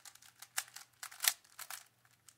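Plastic 3x3 speed cube being turned quickly by hand: a rapid, irregular run of layer turns clicking and clacking, about ten in two seconds, the loudest about halfway through.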